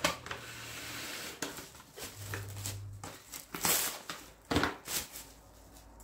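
Plastic cling film being pulled off its roll and crinkled as it is wrapped over a ball of dough, with several sharp crackles.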